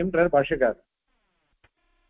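A man's voice lecturing in Tamil, stopping less than a second in, followed by a pause with only a faint click.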